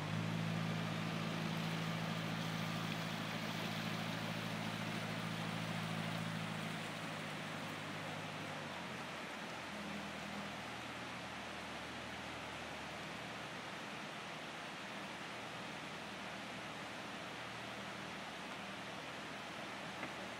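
Narrowboat's diesel engine running at low revs, a steady low hum that fades after about seven seconds as the boat moves away, over a steady background hiss.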